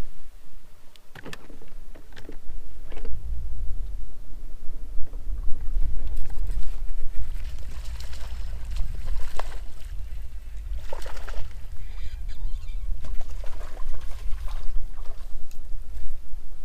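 Wind rumbling on the microphone and water lapping against a bass boat's hull, with scattered splashes as a hooked small largemouth bass thrashes at the surface.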